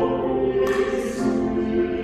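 Church choir singing held chords in several voices, with a brief hiss about half a second in.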